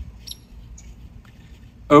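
Low, steady background rumble with a few faint ticks during a pause in talk. A man's voice starts near the end.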